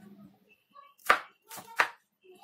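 Chef's knife chopping bitter gourd on a wooden cutting board: two sharp strikes of the blade against the board, about a second in and again near the end.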